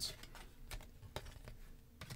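Faint, scattered clicks and light rustling of a stack of trading cards being flipped and slid against one another in the hands.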